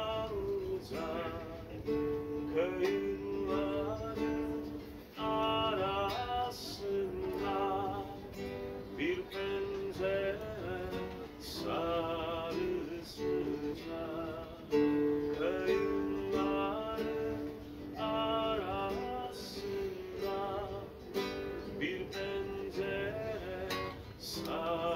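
A man singing a song to his own strummed acoustic guitar, in phrases with short breaks between them.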